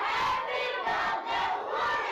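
A class of young children shouting out together, many voices at once, starting suddenly and keeping up.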